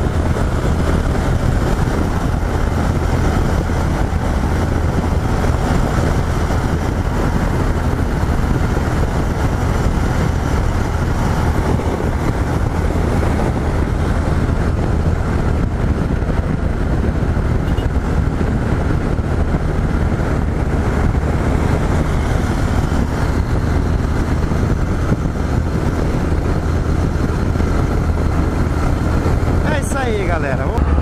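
Yamaha XT 660Z Ténéré's single-cylinder engine running steadily at highway cruising speed, with wind rushing over the microphone.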